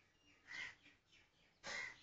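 Near silence broken by two short, faint bird calls a little over a second apart.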